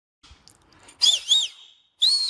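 A man's loud finger whistle, a shrill note that swoops up and down twice, starting about a second in: a whistle to summon someone over.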